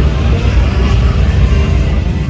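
Loud nightlife street noise: bass-heavy music from bars mixed with crowd chatter and a deep rumble.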